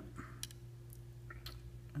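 A few faint, short clicks from a milling vise being cranked slowly to press a brass punch against a pistol's rear sight, over a steady low hum.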